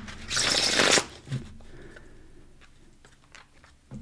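Tarot cards being shuffled by hand: a loud rustling burst of cards in the first second, then softer card rustles and light taps that fade away.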